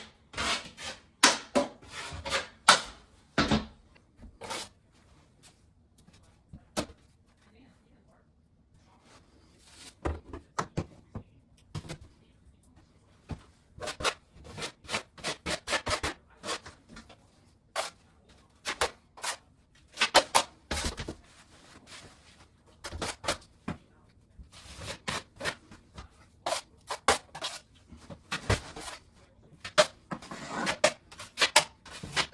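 Metal spackle knife scraping setting-type spackle onto and across drywall patches, and scraping against the mud pan as it is loaded. It comes as runs of short, irregular strokes, with a lull of several seconds after the first few strokes.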